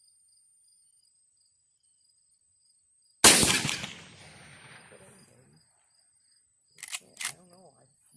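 A single shotgun blast about three seconds in, its report echoing and dying away over about two seconds, over the steady chirping of crickets. Near the end come two short, sharp sounds and a brief voice.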